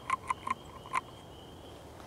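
Downy woodpecker tapping its bill on a thin branch while foraging: four quick, irregular taps in the first second.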